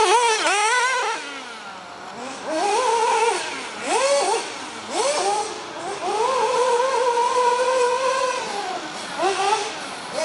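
HPI Savage radio-controlled monster truck revving in short, rising and falling blips of throttle. In the middle it holds one steady high pitch for a couple of seconds, then eases off, and it blips again near the end.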